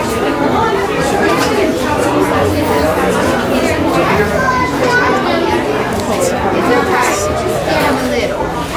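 Crowd chatter: many people talking at once, with no single voice standing out.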